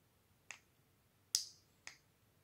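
Three short, sharp clicks of buttons being pressed on a CI Control remote controller, the second one loudest.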